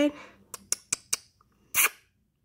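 A cat crunching a bug in its teeth: four sharp clicks about a fifth of a second apart, then a short, louder breathy burst near the end.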